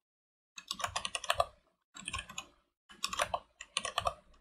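Computer keyboard being typed on: three quick runs of keystroke clicks with short pauses between, starting about half a second in.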